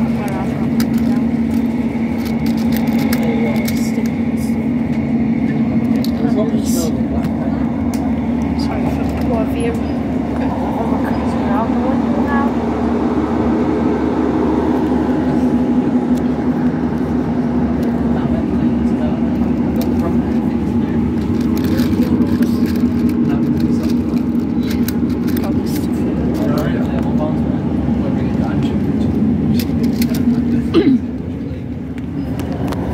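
Cabin sound of a Class 156 Super Sprinter diesel multiple unit under way: a steady drone from the underfloor diesel engine over the continuous rumble of wheels on rail, with scattered clicks and rattles.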